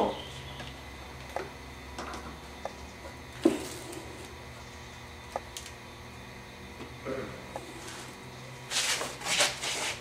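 Light clicks and knocks of metal tongs gripping a crucible of molten aluminum and lifting it out of a small electric kiln, with one louder knock about three and a half seconds in, over a steady low hum.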